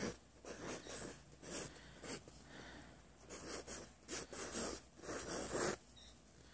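Stick of chalk scratching on a roll-up chalkboard mat in a run of short, irregular strokes as a word is written in cursive.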